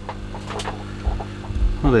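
Steady electrical hum with several even overtones, of the kind an aquarium air pump driving sponge filters makes. A low rumble of handling comes in during the second half, and a man's voice starts right at the end.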